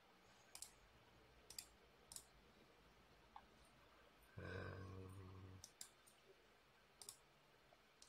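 Computer mouse clicking, single sharp clicks every second or so. A brief low hum, like a closed-mouth 'mm', is heard about halfway through.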